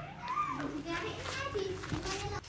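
Baby monkey calling: drawn-out whistly cries that rise and fall in pitch, the last one lower and steadier near the end.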